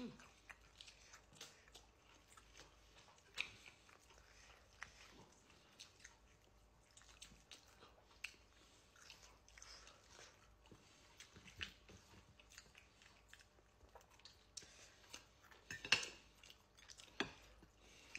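Faint eating sounds: a person chewing and biting grilled chicken and tearing it apart by hand, heard as scattered small wet clicks and smacks, with a louder burst of them near the end.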